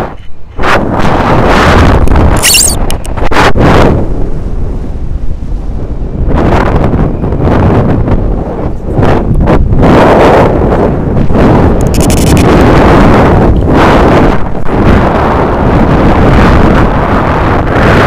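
Loud, gusting wind buffeting the action camera's microphone in the airflow of a tandem paraglider in flight, rising and falling in surges.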